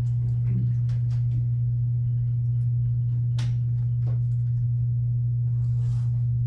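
A steady low hum, the loudest sound throughout, with a few faint clicks and rustles of paper about one, three and four seconds in.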